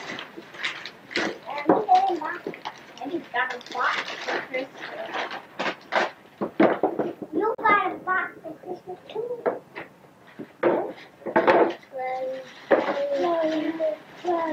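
Wrapping paper and tissue paper rustling and tearing in quick, short crackles as gifts are unwrapped, mixed with children's voices.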